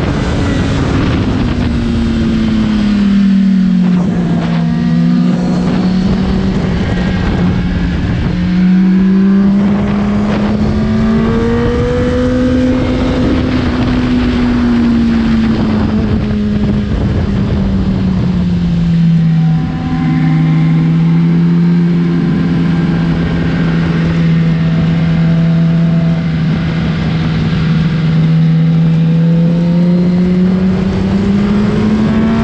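Kawasaki sportbike engine under way at speed, its note rising and falling with throttle and gear changes, heard from on the bike with heavy wind rush over the microphone.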